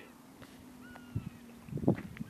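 Quiet shoreline ambience with a faint, thin bird whistle about a second in, and a few soft footstep thuds on the path near the end.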